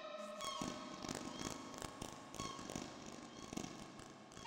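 Eurorack modular synthesizer patch (Doepfer A-100 with a Make Noise Mimeophon delay) playing quietly: a held tone fades out at the start, leaving a grainy, crackling purr with short high blips scattered through it.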